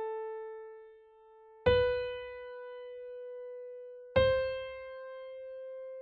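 Piano playing the top of an ascending C major scale one note at a time: an A fading, then a B struck about a second and a half in, then the high C about four seconds in. Each note is left to ring and die away.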